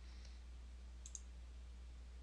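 Faint clicks of a computer mouse: a quick pair of ticks about a second in, with a steady low electrical hum underneath.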